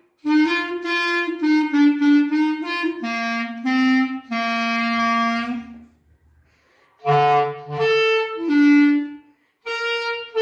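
Solo clarinet played by a young student: a simple melody in short separate notes, the first phrase ending on a longer held note, then a pause of about a second before the next phrase begins.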